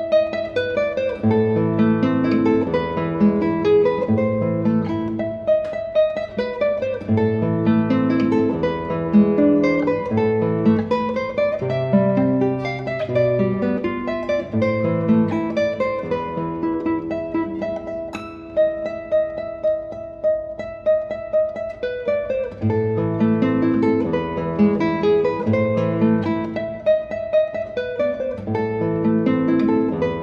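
Solo nylon-string classical guitar played fingerstyle: a classical piece arranged for guitar, with plucked bass notes under a melody, and a softer, sparser passage a little past the middle.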